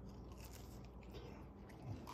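Faint biting and chewing on a slice of homemade pizza, the crust giving small crunches.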